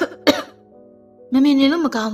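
Voice over soft background music. Two short, sharp vocal bursts come at the very start, a fraction of a second apart. Steady held music notes follow, and the voice comes back for the second half.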